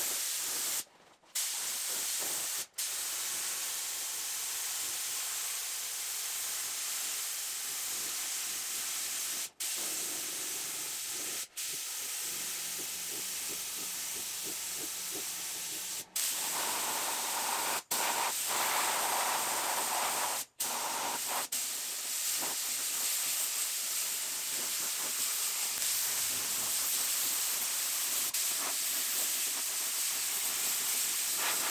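Compressed-air gravity-feed spray gun hissing steadily as it sprays surfacer primer onto body panels. The hiss is broken by several brief gaps.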